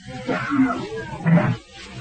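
A man's voice making short wordless sounds, low in pitched, with the loudest one about one and a half seconds in.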